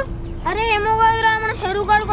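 A high-pitched voice singing in a repetitive sing-song chant: one long held note of about a second, then a shorter phrase near the end.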